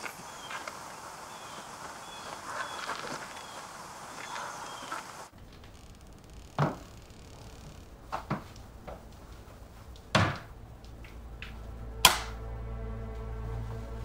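Outdoor ambience with faint bird chirps changes abruptly to the hush of an empty house. There, four sharp knocks or thuds sound about two seconds apart, the last the loudest. A low steady drone comes in near the end.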